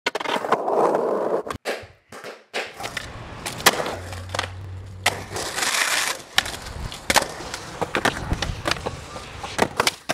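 Skateboard wheels rolling on concrete, with repeated sharp clacks and knocks of the board and trucks hitting the surface and lips of the bowl.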